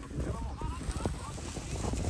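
Faint voices of people talking in the background, over a low rumble of wind on the microphone.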